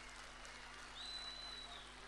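Faint hum and hiss, with one short, thin, high-pitched whistle about a second in that holds steady for under a second.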